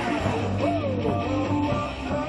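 A rock-style baseball cheer song with guitar plays loudly and steadily over the stadium loudspeakers.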